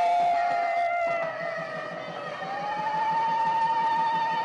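Wedding music from a single wind instrument holding long notes. The first note sags slightly in pitch, then about two seconds in it climbs to a higher note that is held steady with a slight waver.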